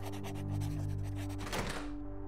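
Quill pen scratching quickly on paper in many short strokes, over soft steady background music; the scratching stops near the end.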